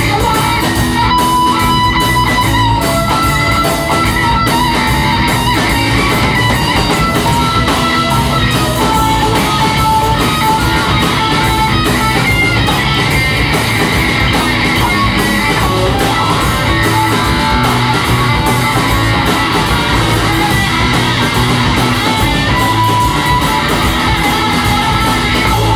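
Live rock band playing an instrumental passage: a plucked lead melody over strummed acoustic guitar and drums, loud and steady throughout.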